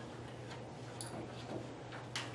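Quiet meeting-room tone: a steady low hum with a couple of faint ticks or clicks, about a second and a second and a half in.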